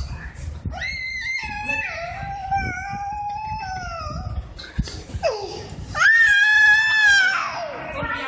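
A toddler crying: a long held wail about a second in, a short falling cry, then a louder, higher wail that breaks and falls away near the end.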